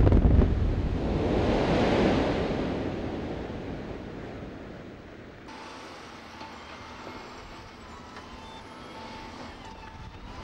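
Rock blasting on a mountaintop: a sharp explosion at the start, then a long rumble that fades over about five seconds. From about five and a half seconds in, quieter steady diesel engine noise from a Volvo BM L120 wheel loader working rock.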